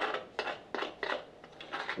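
Sandy toy mortar being scraped and scooped out of a small plastic bowl: a run of about six short scrapes and clicks.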